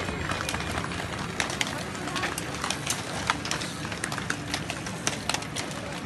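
A pack of road cyclists setting off from a mass start: a run of many sharp, irregular clicks as cycling shoes clip into pedals and bikes roll off, over voices in the crowd.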